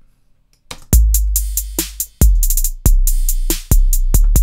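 Programmed Roland TR-808 drum-machine beat starting about a second in: long booming 808 kicks, four in all, the third lower in pitch than the others, under a snare and fast closed hi-hats with triplet note-repeat rolls.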